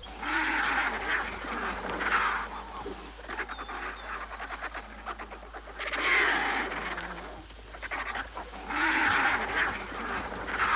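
Vultures squabbling at a carcass, giving harsh, raspy calls in four or five bursts of about a second each, typical of their ritualized fights over carrion.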